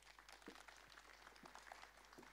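Faint audience applause: many hands clapping irregularly.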